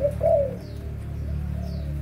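Spotted dove cooing: a loud coo about a quarter of a second in, then softer cooing notes, over a steady low hum.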